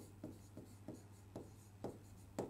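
A stylus writing on an interactive display screen: faint, irregular taps and short strokes, about six in all, over a low steady hum.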